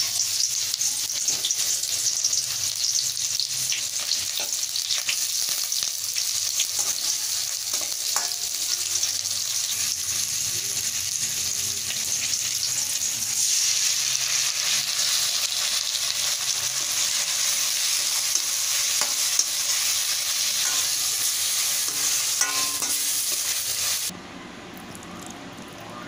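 Sliced onions sizzling in hot oil in a stainless steel kadai, a steady high hiss that starts as they go into the pan. Occasional short clicks and scrapes of stirring over it.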